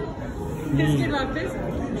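Speech: a voice talking over the background chatter of a busy restaurant.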